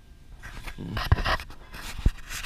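Scraping and rustling handling noise as hands and the close-up camera rub against the tractor's metal linkage, getting louder about a second in, with a few low bumps.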